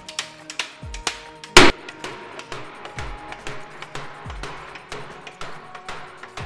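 A cooper's hammer striking a half-built wooden barrel: a quick, irregular run of sharp blows, about three a second, with one much louder strike about a second and a half in. Background music with a low beat plays underneath.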